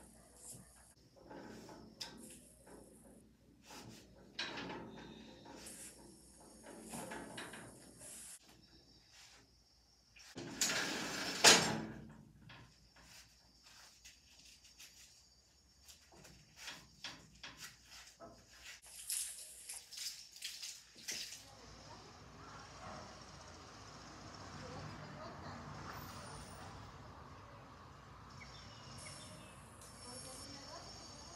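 Hand cleaning of a window: a cloth wiping and rubbing glass and frame, with scattered small knocks and scrapes and one louder rubbing burst about eleven seconds in. A steady hiss takes over for the last third.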